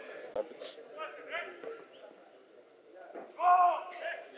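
Scattered voices of players and spectators at a football match, with a sharp knock about a third of a second in and a loud, short shout near the end.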